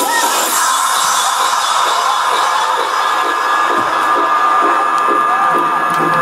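Festival crowd cheering and whooping through a breakdown in a live electronic dance set: the bass and beat drop out, leaving a steady high held tone under the crowd noise.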